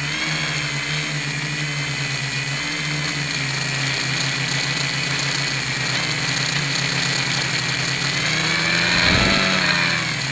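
Electric motors and propellers of a multirotor quadcopter buzzing steadily in flight, heard close from its onboard camera, with the pitch rising and the sound swelling briefly about nine seconds in as the throttle changes. The propellers are not yet balanced.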